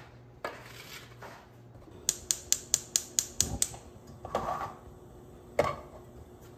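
Gas hob's spark igniter ticking, about eight quick clicks at some five a second, as a burner is lit. Then aluminium pans clatter on the burner grates, ending with one sharp clank near the end.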